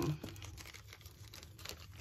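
Thin plastic packaging crinkling faintly as it is handled, a scatter of small crackles.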